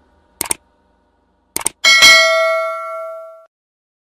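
Subscribe-button animation sound effect: two quick clicks about a second apart, then a bell ding that rings on and fades out over about a second and a half.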